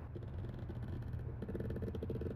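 Rapid run of small clicks from the windage turret of a Primary Arms PLxC 1-8 rifle scope being dialled back to zero, click after click in quick succession.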